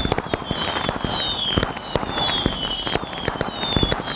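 Fireworks-style sound effect: dense crackling and popping with several short, high whistles that fall in pitch, one after another.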